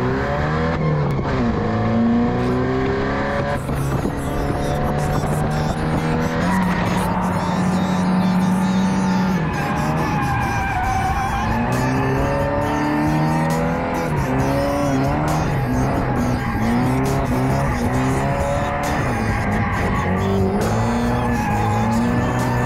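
Nissan 240SX's stock KA24DE 2.4-litre four-cylinder drifting: the engine revs up and down again and again, held at steady revs for a couple of seconds about a third of the way in, with tyres squealing.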